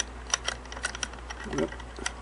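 Small metal clicks and taps, irregular and several in a row, as the bobbin case of a Singer 403A sewing machine is worked onto its positioning finger and the rotary hook.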